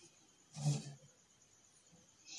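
Quiet room, broken about half a second in by one short, low voice sound, a single brief syllable or grunt.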